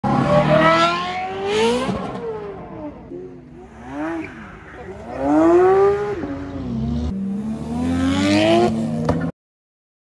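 Performance car engines revving and accelerating hard, the pitch climbing and dropping back over several pulls. The sound cuts off abruptly near the end.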